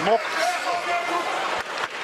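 Television fight commentary over steady arena crowd noise, with a few short sharp knocks near the end.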